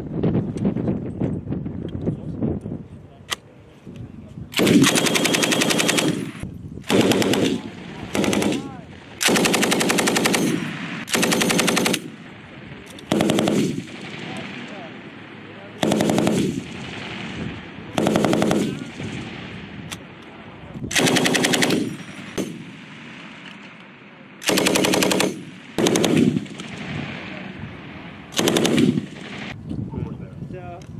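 M240B 7.62 mm belt-fed machine gun firing short automatic bursts, about a dozen of them, each half a second to a second and a half long with brief pauses between, the first about four seconds in.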